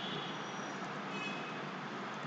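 Steady background noise: an even hiss with a low hum underneath and a few faint, short high tones.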